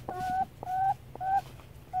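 A chicken calling in three short, even-pitched notes about half a second apart.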